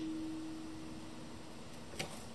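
Quiet room tone with a faint, steady hum held at one pitch.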